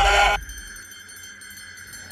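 Film-score sound design: a loud pitched note slides up and holds, then cuts off sharply about half a second in. A faint, steady high ringing tone lingers after it.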